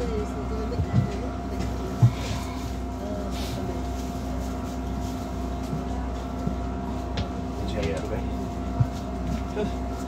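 Inside a Wright GB Kite Hydroliner hydrogen fuel-cell double-decker bus at a standstill: a steady, even hum from the bus, with passengers' voices in the background. Three short dull knocks come about a second in, at two seconds (the loudest) and near the end.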